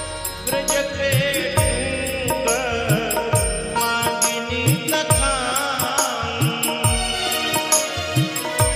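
Instrumental interlude of a devotional bhajan: a wavering melody over steady, deep hand-drum beats whose strokes slide down in pitch, with regular sharp percussive clicks keeping time.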